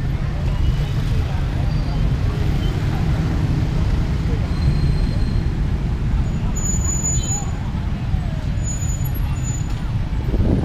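Busy road traffic, cars and motorbikes passing, as a steady low rumble with the murmur of passersby' voices.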